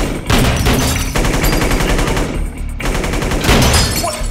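Rapid, sustained gunfire in a film shootout, many shots in quick succession, easing briefly just past two seconds before picking up again.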